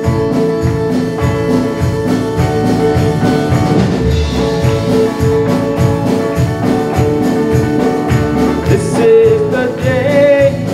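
Live worship band playing a song's instrumental introduction: electric guitars and a held keyboard tone over a steady beat. A voice begins singing near the end.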